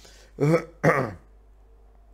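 A man coughing to clear his throat: two short, loud coughs, the first about half a second in and the second just after.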